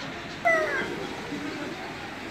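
A single short, loud call from a pond waterfowl, one clear pitched note falling slightly in pitch about half a second in, over a background of distant voices.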